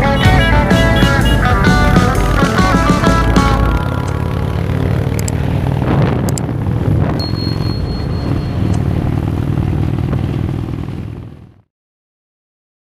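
Guitar background music that ends about four seconds in, leaving a steady motorcycle engine and road rumble from riding on a highway, with a couple of short clicks; the sound fades out to silence near the end.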